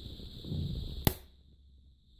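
Plastic case of a Fujitsu Siemens P19-2 LCD monitor being pried open with a screwdriver: a short scrape of plastic, then one sharp snap about a second in as a case clip lets go.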